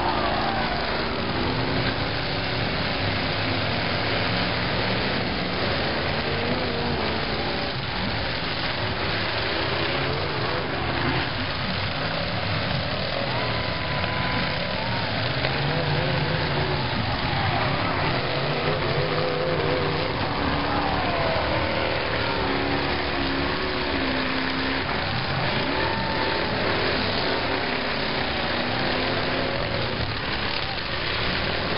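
Several demolition derby cars' engines running and revving up and down at once as the cars push and ram each other, mixed with crowd voices.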